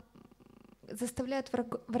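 A person speaking through a microphone. About the first second is a soft, rapid, evenly pulsing low sound, like a drawn-out creaky voice, and then words resume.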